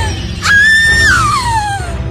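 A shrill wailing cry, held high and then sliding down in pitch over about a second and a half, starting about half a second in, over a low rumbling background.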